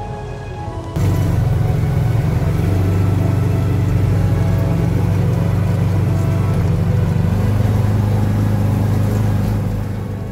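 Engine of a side-by-side utility vehicle running steadily as it drives the farm paths, starting suddenly about a second in and easing off near the end, over background music.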